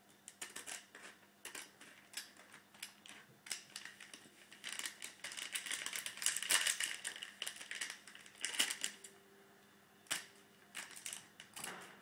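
Foil blind-pack wrapper crinkling and tearing as it is pulled open by hand: an irregular run of sharp crackles, densest and loudest about halfway through.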